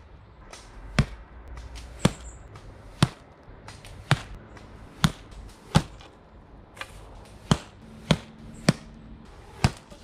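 About ten sharp strikes, roughly one a second and unevenly spaced, as arrows hit a plastic-wrapped roll-up mattress target.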